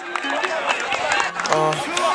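A man's voice over a hip-hop beat, with short ticking percussion and a held note about 1.5 seconds in.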